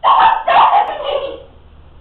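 A young woman crying out in two high, wailing sobs that stop about a second and a half in.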